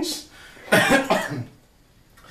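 A person coughing: a short cough right at the start, then a longer one about three-quarters of a second in.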